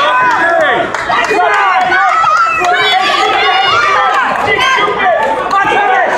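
Crowd of spectators shouting and cheering at a wrestling match, many voices overlapping without a pause.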